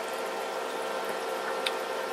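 Aquarium equipment running: a steady watery bubbling hiss with a faint hum, and a small tick about three-quarters of the way through.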